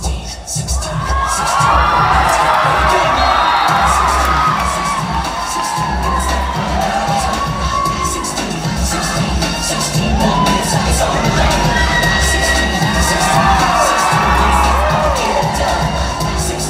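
Audience cheering and shouting over loud dance music with a steady bass beat, the cheering swelling about a second in.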